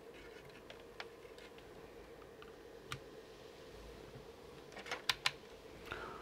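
Faint handling clicks, with a quick cluster of sharp clicks about five seconds in as a DC power plug is pushed into the adapter's socket, over a faint steady hum.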